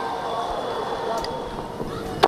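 Steady, indistinct hubbub of a cricket-ground crowd and broadcast ambience, with no single event standing out.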